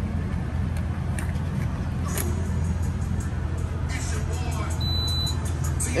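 Steady low rumble of an idling vehicle engine at a fuel pump, with faint clicks and one short high beep from the pump about five seconds in.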